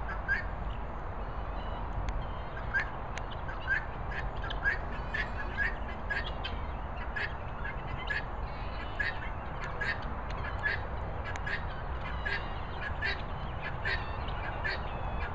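A flock of helmeted guineafowl calling: short, harsh, repeated calls, about one or two a second, over a steady low rumble.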